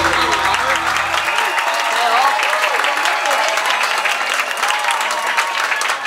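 Audience applauding, many hands clapping together steadily.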